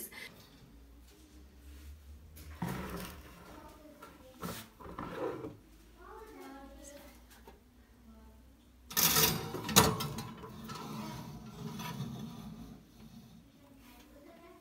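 Clatter and knocks of a glass baking dish and oven rack being handled at an oven, with quieter scrapes before and a loud clatter ending in a sharp knock about nine to ten seconds in.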